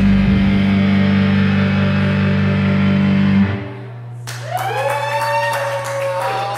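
Two electric keyboards holding a loud, steady sustained chord that stops abruptly a little past halfway, the end of a song. About a second later the audience starts whooping and clapping.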